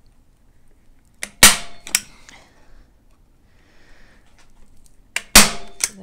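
Hand-operated staple gun firing twice, about four seconds apart, driving staples through burlap into a wooden shelf frame. Each shot is a sharp metallic snap followed by a lighter click, with faint fabric rustling between.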